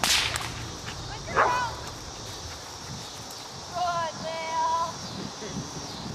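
A sharp, loud whip crack right at the start, typical of a helper agitating a dog in protection training. A second sharp sound follows about a second and a half later, and there are brief high-pitched calls near the middle.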